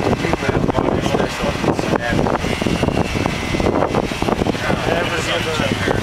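Corded electric hair clippers buzzing while shaving a head, their steady low hum standing out about five seconds in. People talk in the background, with wind on the microphone.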